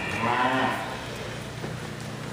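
A Simmental heifer moos once, a short call lasting under a second near the start.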